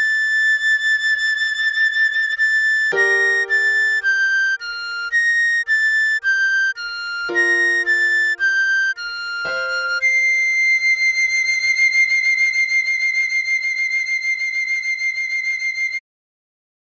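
Recorder playing a slow melody over piano chords: a held high note, then two runs of four falling notes (B-flat, A, G, F), then a long high C held to the end. Lower piano chords are struck three times beneath the runs and fade away.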